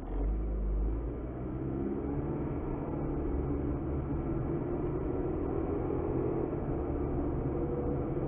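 Car pulling away from a standstill and accelerating, its engine note rising over the first few seconds over a low rumble of road noise, heard from inside the cabin.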